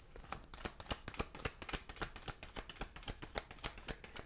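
Tarot deck being shuffled by hand: a rapid, uneven run of soft card-on-card clicks.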